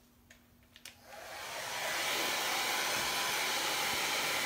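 Handheld blow dryer, switched on after a couple of faint clicks, its fan spinning up over about a second and then running steadily, blowing on freshly applied chalk paste to dry it.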